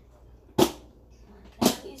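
Two sharp knocks on a hard surface, about a second apart.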